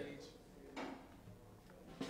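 Quiet pause with faint, indistinct talk among the musicians and a couple of soft knocks, such as instruments being handled.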